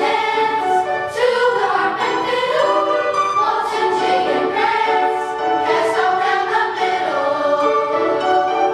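Middle school choir singing together, young voices holding long notes that move from chord to chord without a break.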